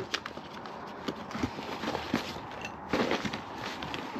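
Hands rummaging through a cardboard box of papers and bagged items: paper rustling and objects shifting, with scattered small knocks and clicks, a little busier about three seconds in.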